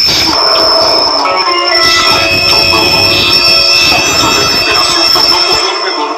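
Soundtrack of a Nytol TV commercial, recorded off the television set: music with a held high-pitched whine running over it.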